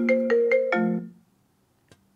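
A short electronic chime, a quick run of bell-like, marimba-like notes over lower held notes, ending about a second in.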